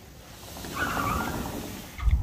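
A sliding glass patio door being rolled open along its track, a rising and fading rumble that lasts about a second and a half.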